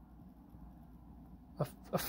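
Quiet room tone with a steady low hum during a pause in a man's talk; his voice starts again near the end with a hesitant "a, a".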